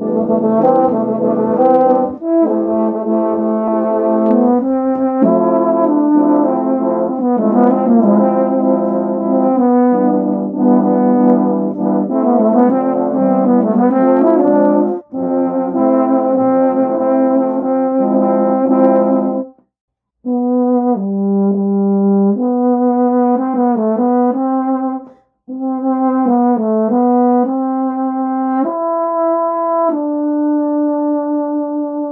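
Several euphonium parts layered together, playing melody and harmony lines in a multitrack brass arrangement of a pop song. The playing breaks off completely for about half a second two-thirds of the way through, then carries on more sparsely and settles into held notes near the end.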